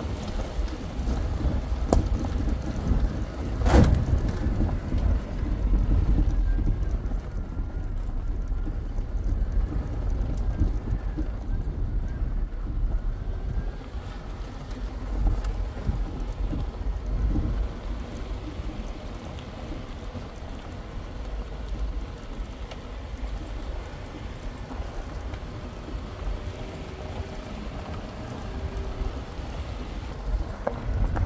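Wind buffeting the camera microphone outdoors: a rough, gusting low rumble, louder in the first few seconds, with a couple of sharp clicks early on.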